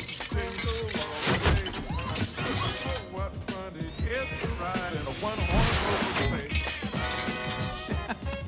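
Film sound effects of powered armour pieces clanking and crashing as they fly to and lock onto the wearer, with a rising mechanical whine about four seconds in, over music.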